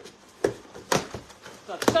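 Cardboard shipping box being handled and its cut, taped flaps pulled open: three short, sharp knocks and snaps of cardboard.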